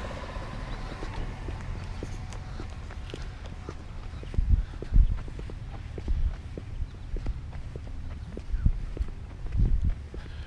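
Footsteps on a concrete driveway, an uneven series of heavy thumps through the middle and end, over a steady low rumble on the microphone.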